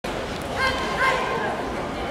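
A high-pitched voice calling out, drawn out over about a second starting about half a second in, above the steady noise of a large hall.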